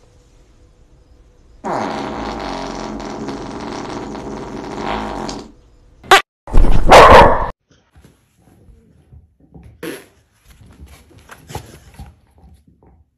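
A dog's long, pitched fart lasting about four seconds, dropping in pitch at the start and then holding steady. Soon after comes a short sharp burst and then a louder, rough sound about a second long, the loudest thing here.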